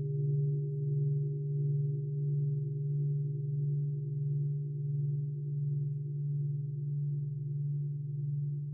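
Large Japanese standing bell ringing on after a strike, a deep hum with a few higher overtones. The tone pulses slowly, about once every three-quarters of a second, and fades gradually, with no new strike.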